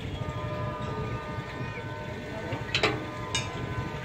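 Distant train approaching on the line: a steady low rumble with a few faint steady tones over it. Two brief sharp sounds come about three seconds in, the first the louder.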